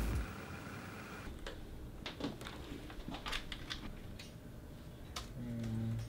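Scattered light clicks and taps as hands work with a phone and electronics on a desk. A short, steady low hum starts near the end.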